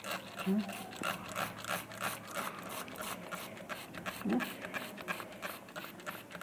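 Trigger spray bottle squeezed over and over, a quick run of short spray hisses, several a second, misting the potting soil of a newly planted cutting.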